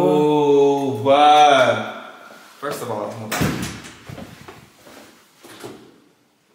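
A voice holds a drawn-out, sung "ooh" for the first couple of seconds. Then an apartment entry door is opened, with a couple of sharp knocks from the latch and door, followed by a few fainter knocks.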